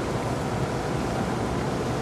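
Steady wind and water noise on an open fishing boat at sea, with a low rumble underneath.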